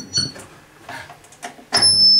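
A pause with quiet room sound, then near the end a loud, steady, high-pitched electronic tone starts suddenly with a low hum under it.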